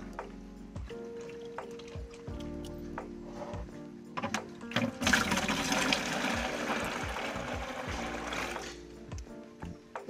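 Water poured from a plastic jug into a plastic bucket: a steady splashing pour lasting about four seconds, starting about five seconds in, with a few small splashes just before as the jug is handled in the water. Soft background music plays underneath.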